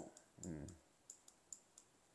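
Faint, light clicks, several small ones spread through the pause, from computer input as handwriting is drawn on screen. About half a second in, a man makes a brief soft voiced murmur.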